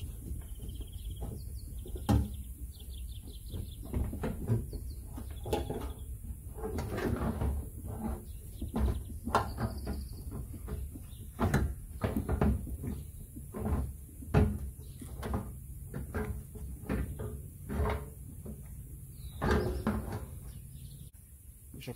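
Microfiber cloth wiping bug-and-tar remover across a loose painted car fender: irregular rubbing strokes with sharp knocks as the panel shifts on its plastic stand, the loudest about two seconds in, near the middle and about fourteen seconds in.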